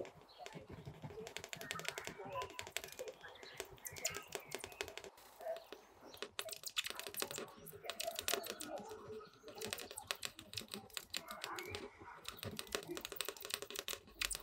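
Mechanical pencil lead scratching and tapping on Bristol board in quick bursts of many small strokes, with short pauses between the bursts.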